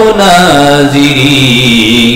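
A man chanting a long, drawn-out 'Allah' as sung dhikr. His voice holds one note, steps down in pitch about half a second in, and holds the lower note.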